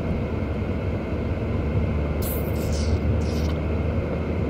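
Steady road and engine noise inside a moving car's cabin, with two brief high hisses a little past halfway.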